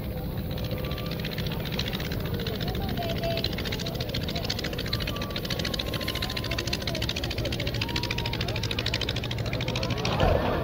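Single-engine light aircraft's propeller engine running with a fast, steady pulsing as the plane flies low over the sea with suspected engine trouble, just before it ditches.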